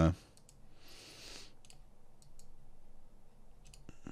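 Computer mouse clicking a few times, faint and irregularly spaced, with a soft hiss about a second in.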